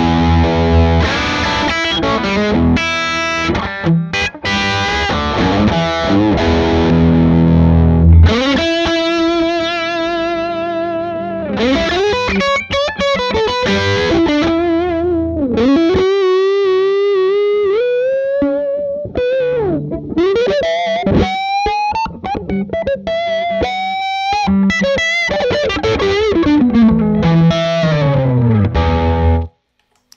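Electric guitar played through a Marshall 2525C Mini Jubilee tube combo on its overdriven (dirt) setting: chords for the first eight seconds or so, then single-note lead lines with long notes shaken by vibrato, stopping just before the end.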